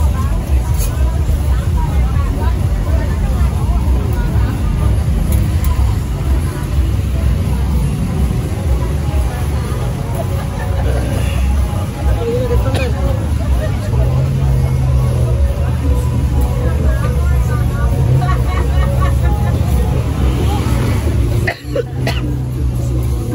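Busy street ambience: vehicle engines and traffic rumbling steadily, with voices of passers-by in the background. A steadier engine hum sets in about two-thirds of the way through.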